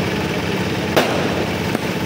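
Fireworks going off: a dense, steady crackle with a sharp bang about a second in and a fainter one near the end.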